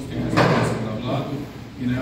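A person speaking, with one short knock-like noise about half a second in.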